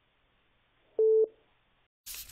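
Telephone busy tone on the line after the other party has hung up: a single short, steady beep about a second in.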